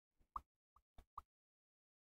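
Four or five short, quiet clicks in quick succession within about a second, against near silence.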